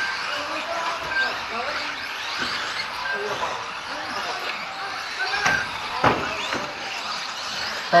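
Micro electric RC cars racing on an indoor track, their motors giving thin high-pitched whines, over background chatter in a large hall. There are two sharp knocks about five and a half and six seconds in.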